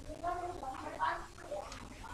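A person's voice speaking quietly, words not made out.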